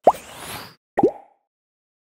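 Cartoon 'bloop' pop sound effects for an animated logo: two quick pops, each sliding upward in pitch. The first comes right at the start with a short airy swish after it, and the second comes about a second in.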